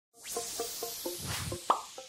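Animated intro sound logo: a run of short plopping musical notes, about four a second, over a soft airy swish. A whoosh swells and ends in one sharp hit near the end that rings away.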